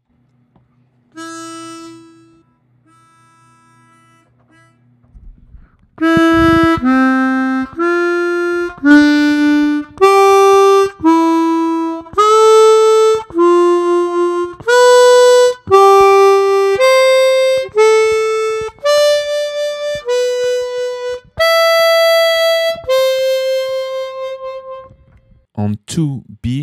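Chromatic harmonica playing a slow exercise in thirds, about one note a second. Each pair of notes drops a third while the line climbs overall, E to C, F to D, G to E, and on up the scale. Two soft test notes sound first, the loud notes start about six seconds in, and the last few notes are held longer before the playing stops just before the end.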